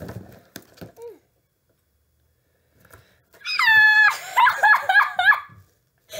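A person's high-pitched excited squeals, a few rising-and-falling cries lasting about two seconds past the middle, after faint clicks of cardboard box flaps being handled in the first second.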